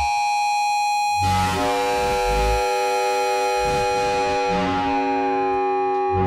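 Ableton Live's Roar distortion effect running in a feedback loop, giving an electronic drone of several steady held tones. Irregular low bass pulses come and go under it. The bass is absent for about the first second, then comes in and the whole sound thickens.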